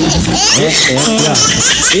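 Several people laughing in high-pitched voices, mixed with talking.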